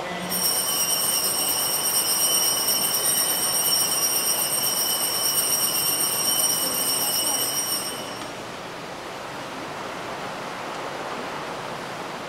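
Altar bells rung without a break for about eight seconds, a bright, steady, high ringing that stops abruptly. Servers ring them at the elevation during the consecration.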